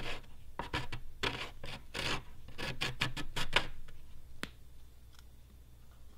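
Plastic glue squeegee scraping across the side of a plastic bucket, spreading adhesive over a glued crack in a quick run of short strokes, about three a second. The strokes stop about two-thirds of the way through, and a single sharp click follows.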